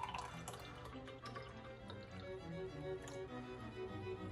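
Juice pouring from a can into a glass, with soft background music playing a slow melody.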